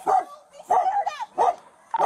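A dog barking, a few short loud barks in quick succession.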